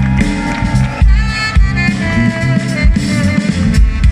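Live band playing a steady groove: electric bass and drum kit with saxophone lines on top.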